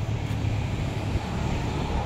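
Shibaura D28F tractor's four-cylinder diesel engine idling steadily, a low even rumble.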